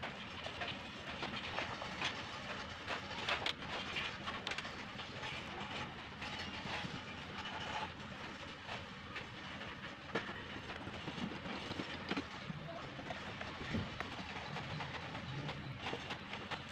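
Brush dabbing resin into fibreglass mat: irregular small taps and scrapes over a steady background hiss.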